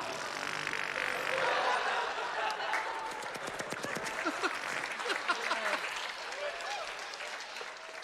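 Audience applause in a comedy club, mixed with crowd voices. The clapping is dense at first, then thins out and dies down over the last couple of seconds.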